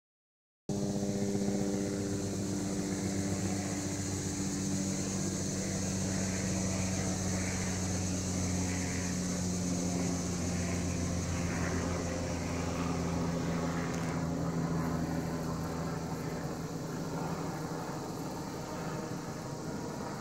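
Steady, high-pitched buzzing of insects in the surrounding trees, starting suddenly just under a second in, over a steady low motor hum. A faint repeated chirp comes and goes in the middle.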